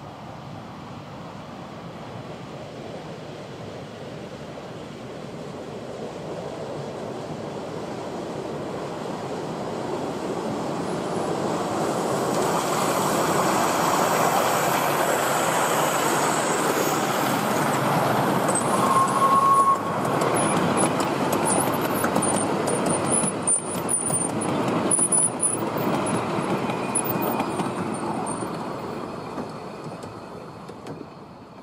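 A miniature 4-8-4 steam locomotive hauling a train of passenger coaches approaches, passes close by and moves away. Its running noise of wheels on rail and steam swells to a peak around the middle, with a run of clicks as the coaches go by, then fades near the end.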